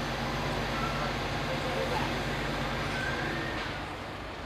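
Diesel engine of a lorry-mounted crane running steadily, a low drone as it powers the crane's hydraulics lowering a load.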